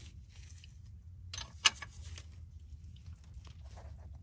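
A wrench turning an Allen bit in the fill plug of a 1976 Mercedes 240D's four-speed manual transmission: light metallic clicks and scrapes, with one sharp click about a second and a half in, over a low steady hum.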